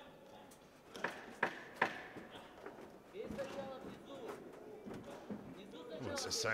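Boxing gloves landing in a close-range exchange: three sharp smacks in quick succession about a second in. Voices then call out from ringside.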